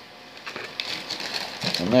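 Faint, uneven rustling and crinkling of a paper coffee filter being handled, used as a wipe for cleaning a soldered circuit board.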